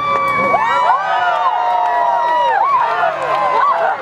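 A large crowd of spectators, many of them children, cheering and shouting, with many high voices overlapping.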